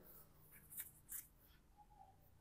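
Near silence, with two faint short ticks a little under a second apart near the middle, from gloved hands handling a cable cutter and bicycle cable housing.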